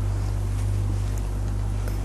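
A pause between words filled only by a steady low electrical hum and even background hiss from the recording.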